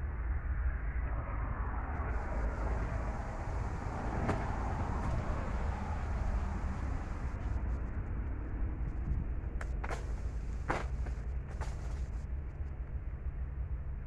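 Knife cutting through the thick peel of a pequi fruit: a few short scrapes and clicks, mostly in the second half, over a steady low rumble.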